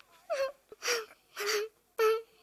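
A child's voice making short, breathy whimpering cries, four of them about half a second apart, each held on one note.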